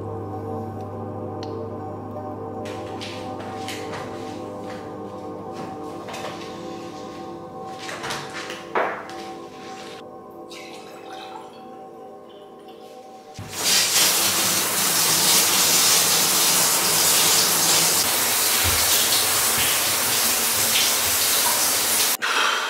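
Background music with steady sustained tones. About two-thirds of the way through it cuts to a running shower: a loud, even hiss of spraying water.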